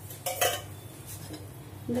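Metal ladle clanking once against a metal kadai about a quarter second in, with a short ring, as the thick kootu is stirred.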